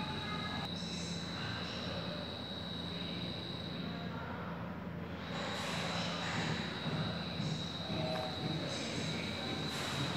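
Steady indoor room ambience: a constant low rumble with a thin, steady high-pitched whine over it, a little louder from about halfway through.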